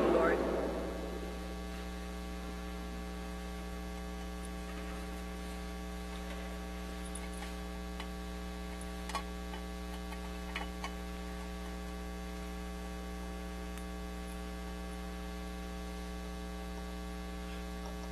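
Steady electrical mains hum, a low buzz that holds unchanged throughout, with a few faint clicks about nine and ten and a half seconds in.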